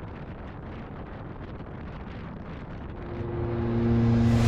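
Wind rushing over the microphone and the low drone of a Honda CTX700 motorcycle cruising at about 30 mph. Background music fades in over the last second and grows louder.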